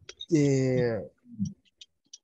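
Speech: one drawn-out spoken word with a slightly falling pitch, heard over a video call, with a few faint clicks around it.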